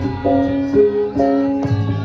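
Javanese gamelan music: metallophones play a steady melody that moves about two notes a second, and a low bass tone comes back in near the end.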